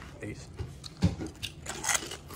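Jalapeño potato chips being bitten and chewed: a few short, crisp crunches.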